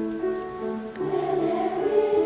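Children's choir singing with grand piano accompaniment, sustained notes that swell louder about a second in.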